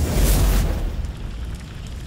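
A deep explosion-like boom and rumble sound effect, loud at first and fading away over the two seconds.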